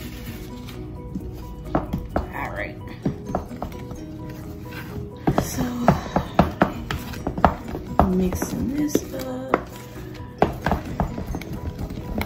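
Cupcake batter being stirred by hand in a bowl: a mixing utensil knocking and scraping against the bowl in quick, irregular clicks, busiest from about five seconds in. Quiet background music runs underneath.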